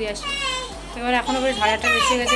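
Children's voices: a run of short, high-pitched calls and chatter, louder from about a second in.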